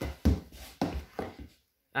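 A few short, soft knocks and rustles of handling, about four in the first second and a half, then a quiet gap.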